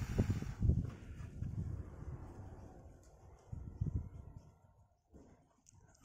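Irregular low puffs of air buffeting the phone's microphone, bunched at the start and again about halfway through, then dying away.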